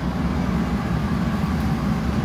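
Steady, deep roar of a glassblowing hot shop's gas-fired furnaces and their blowers, holding an even level throughout.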